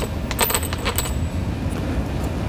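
A few light metallic clicks and clinks, four close together in the first second and fainter ones after, as a 17 mm socket wrench works the bolts of a soft roll-up tonneau cover's metal tension plate.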